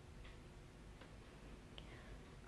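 Near silence: faint studio room tone with a few faint, short ticks spread across the two seconds.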